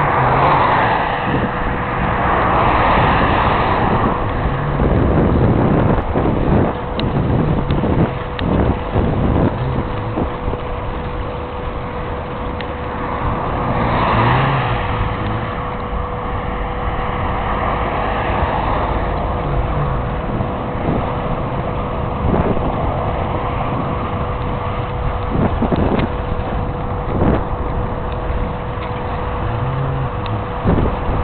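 Wind buffeting the microphone with a constant low rumble and frequent knocks, while cars pass on a nearby road, loudest in the first few seconds and again around 14 seconds in. A thin steady hum runs underneath.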